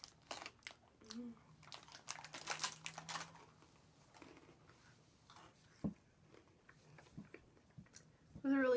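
Faint crunching and crinkling as crunchy pizza-flavored pretzel snacks are chewed and a snack bag is handled, a cluster of sharp crackles in the first three seconds thinning out after.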